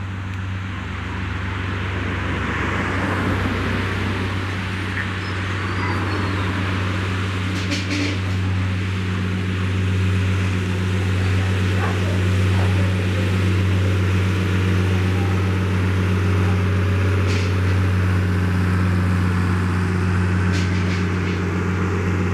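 A machine running with a steady low hum, holding the same pitch throughout. A few short sharp sounds come over it, about a third of the way in and again near the end.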